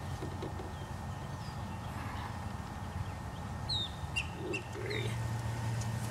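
A few short, high, downward-sliding bird chirps, around two seconds in and again about four seconds in, over a steady low hum.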